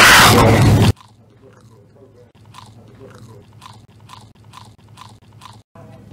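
A very loud, heavily distorted meme sound effect that cuts off suddenly about a second in. It is followed by about ten quieter short crunching sounds, evenly spaced at roughly three a second.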